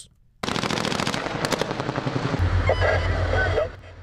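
Rapid automatic gunfire, one long fast burst of shots lasting about three seconds, joined about halfway through by a deep rumble.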